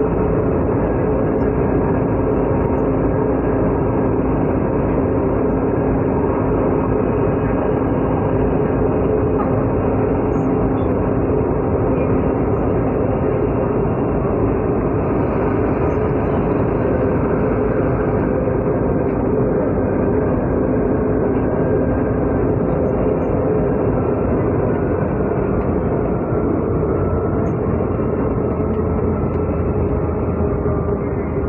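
Steady running noise of an MRT-3 light-rail train heard from inside a crowded car: a loud, even rumble with a steady hum, easing slightly near the end.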